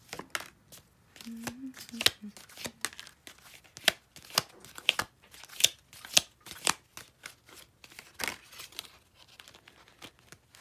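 Round cardboard tea leaf cards being shuffled in the hand and dealt onto a card-covered tabletop: a steady run of sharp clicks and snaps as the cards are flicked and set down.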